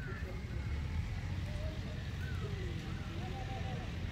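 Outdoor ambience of an open cricket ground: a steady low rumble, with faint distant calls and voices from the players rising and falling over it a few times.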